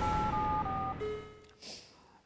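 Tail of a TV channel ident jingle: held electronic chord tones that change pitch twice and fade away after about a second and a half, leaving quiet studio room tone.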